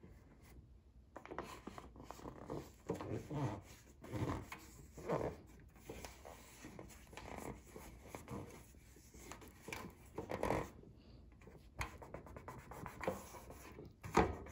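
Hands rubbing and smoothing self-adhesive wood-grain contact paper down onto a metal tree collar, in faint, irregular strokes with a few louder swipes, working out wrinkles along the seam.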